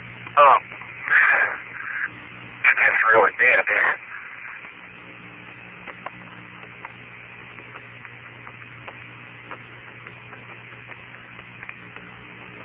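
Apollo 16 lunar-surface radio transmission: an astronaut's voice speaks a few short phrases over the radio for the first four seconds. Then the channel stays open with a steady hiss, a low hum and faint scattered clicks.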